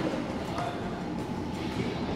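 Steady, rumbling room noise of a boxing gym during a sparring round, with faint voices in it.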